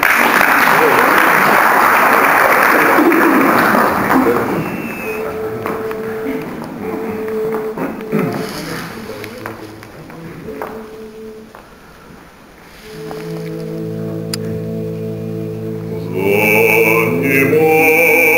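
Applause in a hall for about four seconds, then a few brief held single notes as the pitch is given. About thirteen seconds in, a male vocal ensemble begins holding a chord in close harmony, and a solo voice enters above it near the end.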